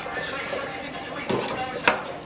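Hot oil in a deep fryer bubbling and sizzling steadily around battered salmon fillets just lowered into it in a wire basket. Two sharp metal clicks sound in the second half.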